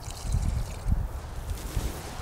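Irregular low wind rumble buffeting the microphone, with faint trickling of acetone being poured from a small cup into a plastic bucket of gel coat.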